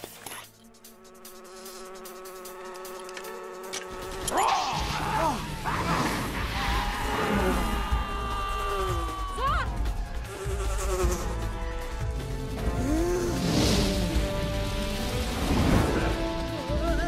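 Buzzing of wasps' wings, swooping past with a pitch that rises and falls as they fly by. The buzzing gets louder from about four seconds in.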